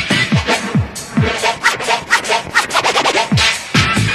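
Early-1990s breakbeat hardcore rave music from a DJ mix: chopped breakbeats over deep kick drums that drop in pitch, with a quick roll of drum hits about three seconds in.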